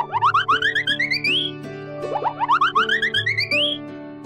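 Cartoon sound effect over children's background music: a quick run of notes climbing in pitch and ending in an upward slide, played twice about two seconds apart, over held chord and bass notes.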